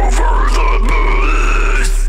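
Deathcore track playing: a heavy, sustained low bass under a wavering high melodic line, with a few sharp drum and cymbal hits.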